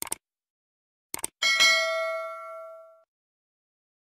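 Subscribe-button animation sound effects: mouse clicks, a pair at the start and another pair about a second in, then a bell-like notification ding that rings and fades out over about a second and a half.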